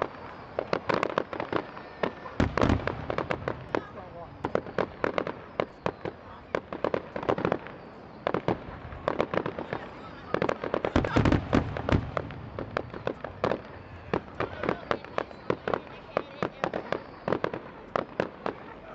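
Fireworks going off: a fast, irregular run of sharp pops and crackles, with heavier booms about two and a half seconds in and again about eleven seconds in.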